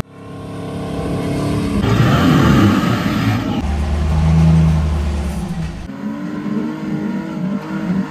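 Off-road Jeep engines revving under load across a quick run of separate trail clips, the engine note changing abruptly at each cut, about every two seconds.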